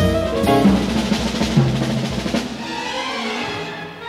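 Orchestral music from a jazz-inflected piano concerto, with orchestra and drums playing a dense, full passage that thins to a quieter texture about two and a half seconds in.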